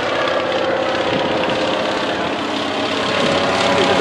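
Antonov An-2 biplane's nine-cylinder radial engine and propeller droning steadily as it passes overhead, growing a little louder near the end.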